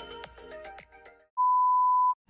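Background music of short, evenly struck notes breaks off a little over a second in. After a brief gap, a steady, loud 1 kHz test-tone beep starts: the tone that goes with colour bars.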